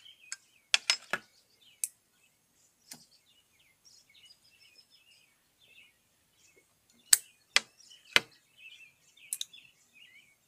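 A meerschaum pipe being relit: a run of sharp clicks and soft pops from the lighter and from puffing on the stem, in two bursts, one near the start and one past the middle. The tobacco is damp and hard to keep lit. Faint birds chirp in the background.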